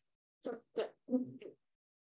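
A person laughing softly: four short, faint chuckles in quick succession.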